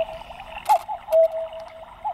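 A tick-tock sound cue: a click with a short tone, then a held steady tone, the pair repeating about once a second.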